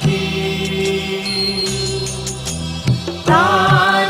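Christian devotional song sung by a small group of voices with instrumental backing: held accompaniment notes for the first three seconds or so, then the singing voices come in.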